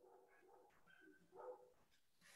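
Near silence: room tone, with a few faint, brief pitched sounds too weak to identify.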